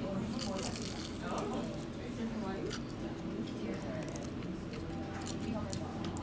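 A person biting and chewing a crispy fried egg roll: crunching and crackling, thickest in the first second and again near the end.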